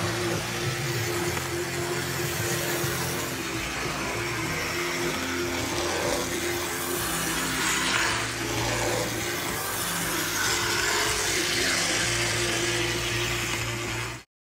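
Small-scale brass 0-6-0 model locomotive running along the track, its drive making a steady mechanical hum with a steady higher whine.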